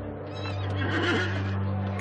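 A horse whinnying, rising about half a second in, over a low, steady music drone.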